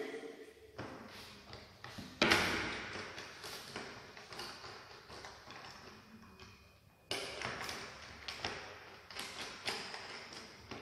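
Knocks and taps from handling a table tennis rubber press and bat on the table: a sharp knock about two seconds in, another about seven seconds in, and lighter taps near the end, each with a short room echo.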